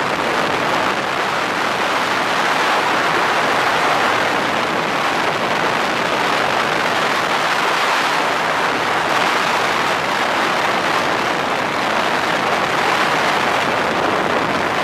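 Steady rushing noise of a Stratos 201 Pro Evolution bass boat running at speed. Wind on the microphone, water on the hull and the outboard motor blend together with no distinct engine tone.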